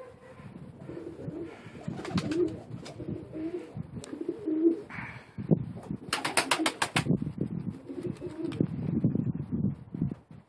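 Domestic pigeons cooing: repeated low, warbling coos through most of the stretch, with a quick run of sharp clicks about six seconds in.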